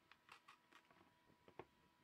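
Near silence with a few faint clicks and taps of hands handling an HP 635 laptop's plastic case while a cable is unplugged and the machine is lifted, the sharpest click about one and a half seconds in.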